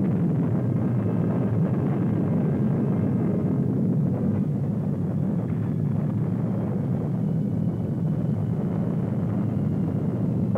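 Steady, deep rumble of an atomic bomb explosion.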